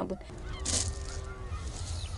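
A drawn-out animal call, a honk-like tone lasting about a second from shortly after the start, over a steady low outdoor rumble.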